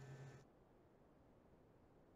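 Near silence: a faint low hum cuts off suddenly about half a second in, leaving nothing audible.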